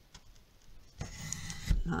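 Paper trimmer's sliding cutter pushed along its rail, slicing through card with a short rasp for under a second, ending in a knock.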